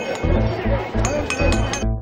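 Rhythmic metallic jingling, about five clinks a second, over steady low drumbeats and a crowd's voices. Near the end it cuts off and plucked-string music starts.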